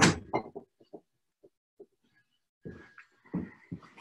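A house window being shut with a sharp bang, followed by a scatter of soft knocks and thumps, then a busier run of knocks and thumps in the last second or so.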